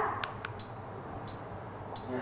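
Quiet studio room tone with a few faint clicks.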